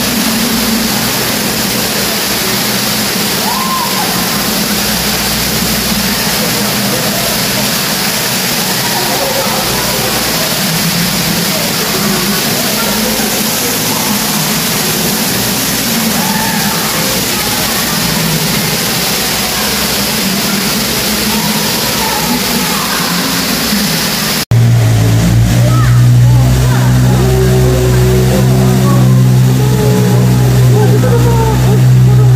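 Fountain jet of water spraying up and splashing down into a pool, a steady rushing noise with faint voices under it. About 24 seconds in it cuts to a boat motor running with a steady low hum, louder than the fountain.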